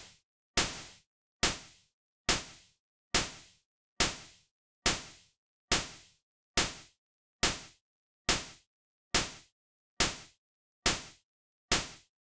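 Synthesized snare from Serum's noise oscillator, saturated with Diode distortion, playing in a loop. Each hit is a sharp burst of noise with a short decaying tail, repeating evenly about once every 0.85 s.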